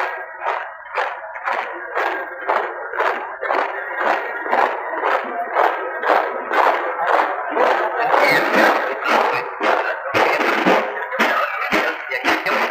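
Music carried by a steady drumbeat, a little under three strokes a second, over faint held tones; it grows fuller and brighter about two-thirds of the way through.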